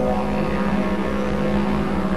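Background music led by a didgeridoo: a steady low drone with a pulsing rhythm underneath.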